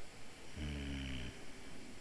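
A man's short, low hum from the throat, falling slightly in pitch, starting about half a second in and lasting under a second.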